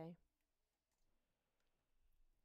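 A paper page of a hardback picture book being turned by hand: very faint rustling with a couple of soft clicks, close to near silence.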